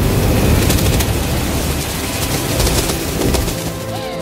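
Film sound effect: a loud rushing roar with a dense crackle and a deep low rumble. It cuts off about three and a half seconds in, and sustained musical tones take over.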